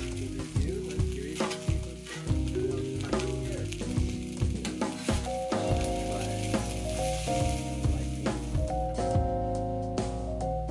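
Bacon, sausage and potatoes sizzling on a flat-top camp griddle as the food is turned, with background music playing over it.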